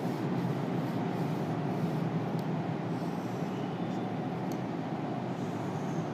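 Steady low background rumble of room noise, with a few faint ticks.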